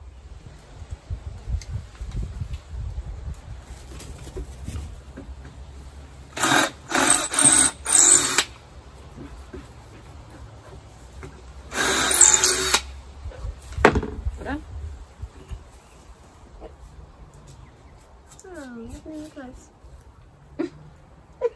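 Cordless drill boring holes through a wooden board: a burst of about two seconds in three short pulls, then a second burst of about a second a few seconds later, followed by a sharp click.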